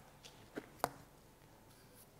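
Two faint, short clicks about a third of a second apart as a trowel scoops mortar off a hawk, used to fill pinholes in the floated plaster.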